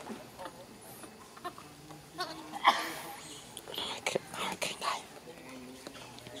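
Monkeys calling: a burst of high squealing calls about two and a half seconds in, then a few shorter calls around four to five seconds.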